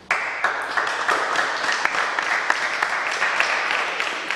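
Applause from a small group of spectators in a sports hall, starting suddenly and tapering off over about four seconds.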